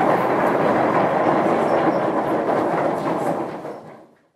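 Audience applauding steadily after a lecture, the applause fading out near the end.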